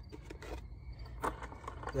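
Handling noise from a skateboard: a few light clicks and knocks as the board and its wheels are handled by hand.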